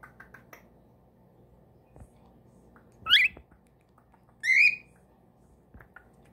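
Cockatiel giving two short, loud calls about a second and a half apart: the first a quick rising whistle, the second a shorter chirp. A few faint clicks come near the start.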